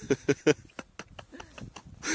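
Climbers' boots crunching on icy, crusted snow on a steep slope: a quick run of short, sharp steps, several a second. A few short breathy vocal sounds come in the first half second.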